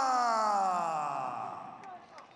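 Ring announcer's voice drawing out the last syllable of a fighter's name in one long call, its pitch sliding down as it fades out about a second and a half in.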